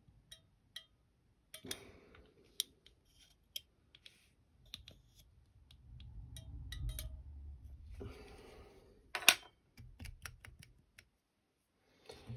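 Small fly-tying scissors snipping CDC fibres on a shrimp fly, heard as a string of sharp clicks at uneven intervals with some handling rustle, the loudest snip about three quarters of the way through.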